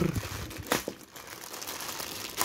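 Clear plastic packaging crinkling as hands rummage in it and lift out a wrapped figure part, a continuous crackle with a few sharper crinkles, one louder about two thirds of a second in.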